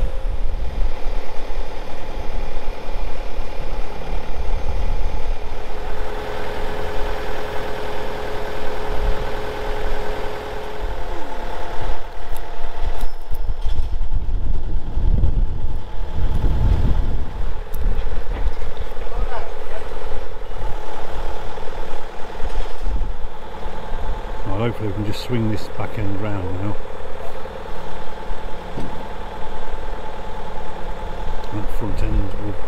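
A crane's engine running steadily at a constant speed, with wind rumbling on the microphone.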